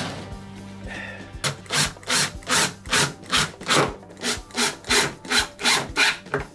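Cordless Makita impact driver driving a screw through a metal bracket into a wooden enclosure panel: a steady motor hum at first, then a regular rasping pulse about three times a second from about a second and a half in.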